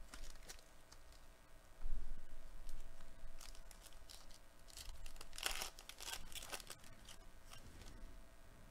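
A foil trading-card pack wrapper being torn open and crinkled by hand, in several short rips and rustles, the sharpest about two seconds in and again past the middle.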